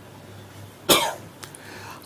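A man coughs once, short and sharp, into a close microphone about a second into a pause in his speech.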